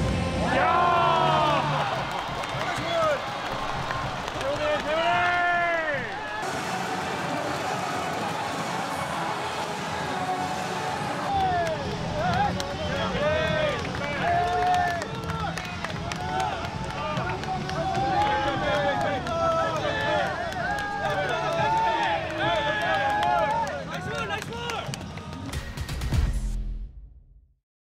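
Excited shouts and cheering voices over background music with a steady bass line.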